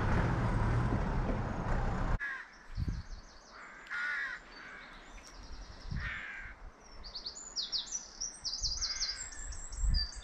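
A loud rushing rumble cuts off suddenly about two seconds in. Birds calling follow: quick series of high trilled notes, with a few lower single calls in between.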